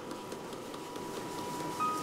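Soft background score: a held tone, with a few light chime-like notes coming in near the end, over low room noise.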